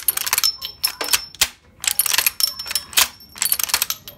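Skeletonised 1918 Vickers Mk I machine gun being cycled by hand: four bursts of sharp metal clicks and clacks from the lock and crank, about a second apart, some followed by a brief metallic ring.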